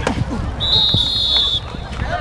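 A sharp hit right at the start, then a referee's whistle blowing one shrill, steady blast of about a second, blowing the play dead, with players' voices shouting around it.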